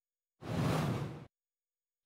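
A single whoosh transition sound effect, just under a second long, swelling and then fading away as new text appears on a slide.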